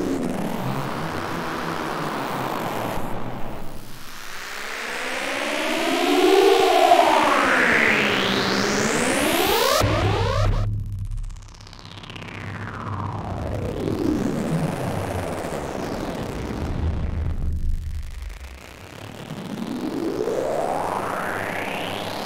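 A run of synthesizer riser and downlifter sweeps for trap production, gliding down and up in pitch one after another. About six to eight seconds in, a buzzy tone bends up and back down, then a rise climbs and cuts off suddenly near ten seconds, followed by a falling sweep over a low drone and another rising sweep at the end.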